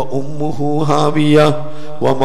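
A male preacher's voice chanting in a drawn-out sing-song, holding each phrase on long, level notes.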